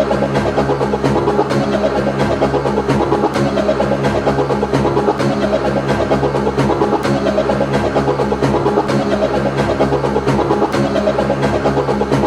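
Old-school hardcore rave track in a breakdown without the full drum beat: a held synth chord drones steadily over a low bass note, with light, evenly spaced ticks keeping time.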